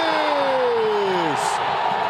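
A football commentator's long drawn-out shout, falling steadily in pitch and fading out about one and a half seconds in, over the steady noise of a stadium crowd.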